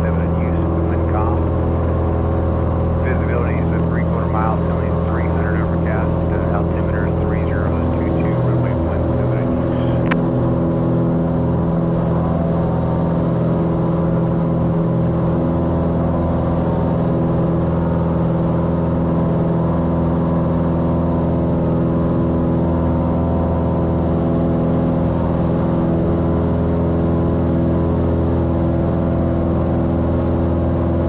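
Cessna 182's six-cylinder piston engine and propeller droning steadily at takeoff power, heard from inside the cabin, through the takeoff roll and climb-out. The low tone of the engine shifts slightly about eight seconds in.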